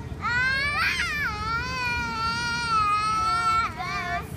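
A child's high-pitched voice holding one long wailing note for about three and a half seconds. It rises at first, then holds nearly level, and a short second call follows near the end.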